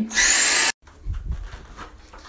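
Handling noise from a phone being swung around: a loud rushing scrape that cuts off abruptly under a second in, then faint low bumps and rubbing.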